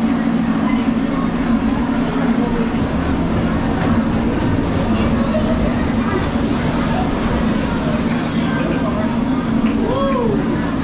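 A steady low machine hum with a constant rumble underneath, and faint voices of people nearby.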